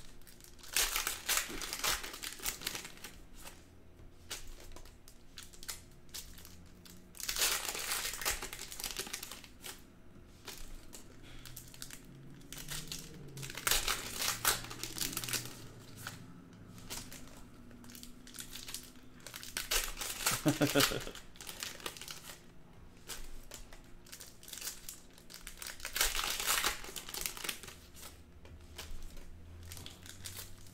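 Foil trading-card pack wrappers crinkling as Donruss Optic baseball packs are slit open and emptied one after another. The crinkling comes in bursts of a second or two, about every six seconds.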